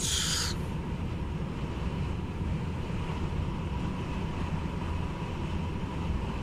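Steady low drone of a Renault Magnum truck's diesel engine and tyres, heard from inside the cab while cruising on a motorway. A short hiss comes at the very start.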